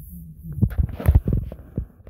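Handling noise from a phone being moved in the hand: a quick run of dull thumps and rubbing against the microphone, starting about half a second in.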